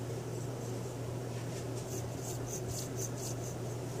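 Worn Titan 12-turn 550 brushed motor turned by hand, its shaft grating with faint, gritty scratching from sand caught inside it. The scratches come about three or four a second, starting about a second and a half in, over a steady low hum.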